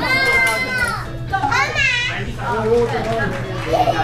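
A young child's excited, high-pitched voice in play, laughing. There is one long high call in the first second and a rising-and-falling call just before two seconds, with adult voices and background music underneath.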